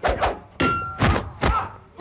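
Dubbed kung-fu fight sound effects: a quick series of sharp whacks, about four in two seconds, as blows land. One is followed by a brief ringing tone.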